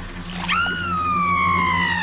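A high, whistle-like pitched tone in the film soundtrack jumps up about half a second in, then slides slowly down in pitch for about a second and a half, over a low steady hum.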